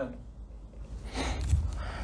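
A man says a short "Amen," then after a pause takes a quick, audible breath about a second in, close to a handheld microphone.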